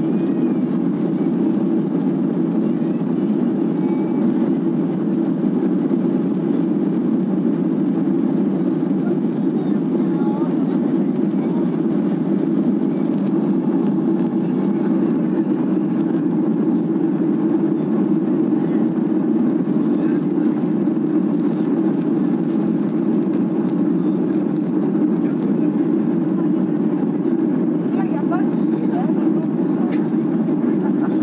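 Steady drone of a Ryanair Boeing 737's jet engines and airflow, heard from inside the passenger cabin while the airliner climbs after takeoff.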